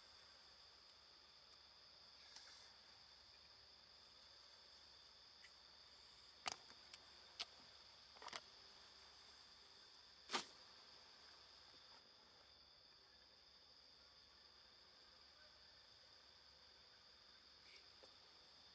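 Faint steady high-pitched drone of insects chirring, with a few sharp clicks in the middle, the last one the loudest.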